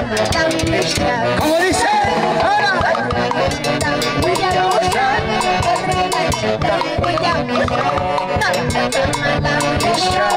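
Live Andean band music: a woman sings through a microphone and PA speaker over saxophones and percussion (timbales and drum kit), keeping a steady, driving beat.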